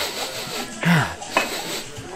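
Dining-room background of a busy restaurant, a steady hubbub with dishes and cutlery clinking. A brief falling voice sound comes about a second in, then a sharp click.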